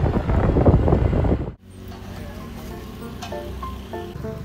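Wind buffeting the microphone outdoors, loud and rumbling for about a second and a half, then cut off abruptly. Soft background music follows over a low, steady background noise.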